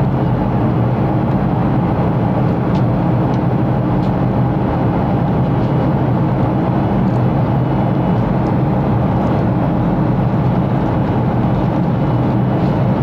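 Steady cabin noise of a Boeing 737-500 in its climb: a constant rumble and hiss from the CFM56 jet engines and airflow, heard from a window seat beside the engine, with no change in level.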